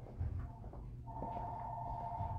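Electronic telephone ringing: a warbling two-tone ring that starts about a second in and carries on past the end, over a low background hum.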